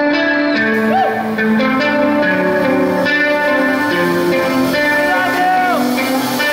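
Live acoustic and electric guitars playing a song's slow intro: held notes ringing over changing chords, with a few notes sliding in pitch.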